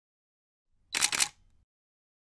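A camera shutter sound effect: a short, sharp double click about a second in.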